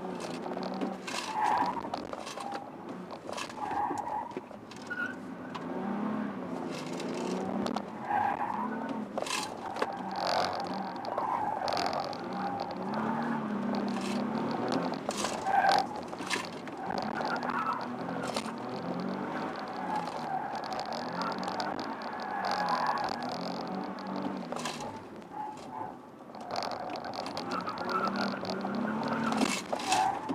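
Nissan 370Z's V6 engine heard from inside the cabin, its pitch repeatedly rising and falling as the car is driven hard at low speed through tight turns, with tyres squealing in the corners.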